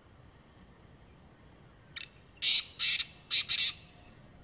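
Male black francolin calling: a short faint note about halfway through, then four loud, harsh notes in two quick pairs.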